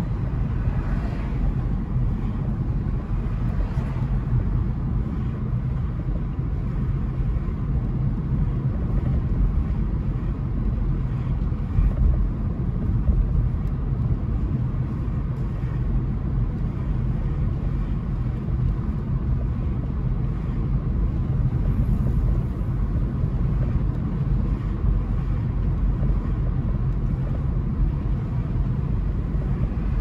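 Steady low road-and-wind rumble of a car driving at city speed, heard from inside the cabin with the windows open.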